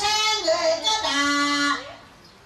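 A single voice singing Korat folk song (pleng Korat), unaccompanied, in long held notes that waver and bend in pitch. The singing breaks off just before the end.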